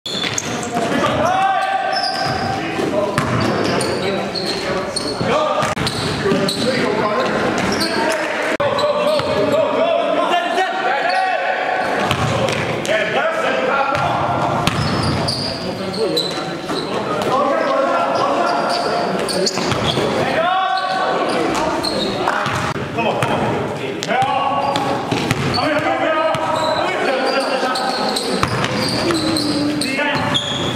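Basketball bouncing on a gym floor during play, with players' indistinct shouts and calls ringing through a large hall.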